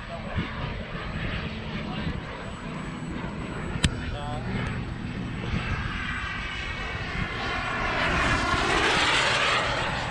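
Turbine-powered RC model jet flying by: a broad jet rush that grows louder over the second half and peaks about nine seconds in. A single sharp click comes about four seconds in.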